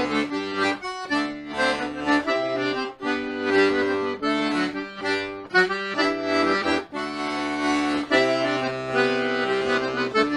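Castagnari Trilly G/C melodeon (diatonic button accordion) playing a jig solo: a quick melody on the right-hand buttons over left-hand bass and chords. The sound drops briefly a few times between phrases.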